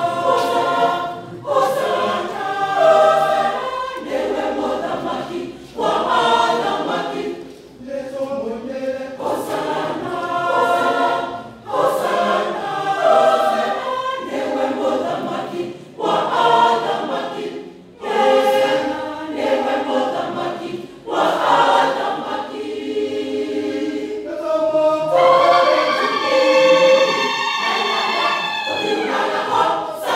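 Choir singing, in phrases broken by brief pauses every two or three seconds, swelling into a long, loud held note in the last few seconds.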